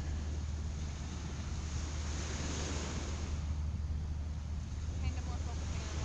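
Wind on an outdoor microphone: a steady low rumble with an even hiss above it, no distinct events.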